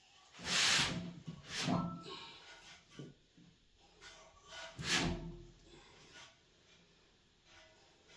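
A lifter's forceful breaths while bracing over the log before the press: three loud, sharp breaths about half a second, a second and a half, and five seconds in, with quieter breathing between.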